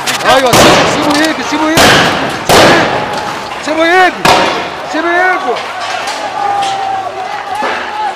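Men shouting and yelling in a street clash, cut by several sharp, loud bangs: about half a second in, two close together around two seconds in, and another a little after four seconds.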